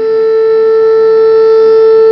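A loud, steady, siren-like tone held at one unchanging pitch.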